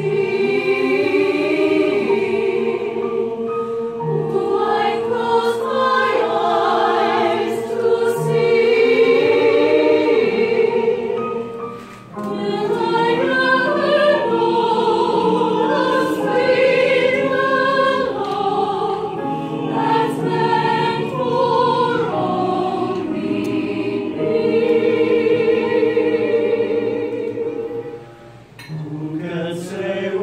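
Mixed choir of men's and women's voices singing together in sustained phrases, with short breaks between phrases about twelve seconds in and again near the end.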